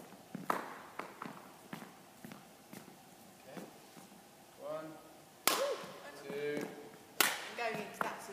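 Badminton racket strings striking a shuttlecock: two sharp cracks about a second and a half apart in the second half, with a weaker tap early on.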